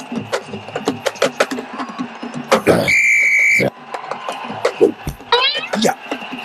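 A referee's whistle blown in one steady shrill blast of under a second, about three seconds in, over rapid percussion strokes and voices. A quick rising warble follows near the end.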